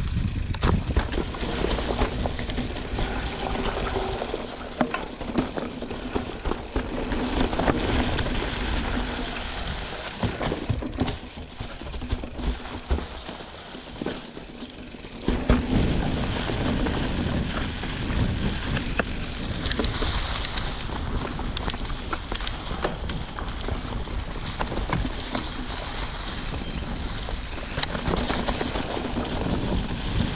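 Mountain bike, a Giant Trance 29, rolling over a trail covered in dry fallen leaves: the tyres run through the leaves with frequent clicks and rattles, mixed with wind noise on the microphone. It goes quieter for a few seconds before halfway, then louder again.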